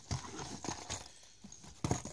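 Hard plastic fishing-lure packaging being handled: scattered light clicks and taps as the blister packs knock together, with a sharper click near the end.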